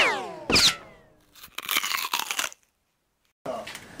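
Edited-in gunshot sound effect for a channel logo: two sharp cracks about half a second apart, each trailing a falling whine, then about a second of noisy clatter.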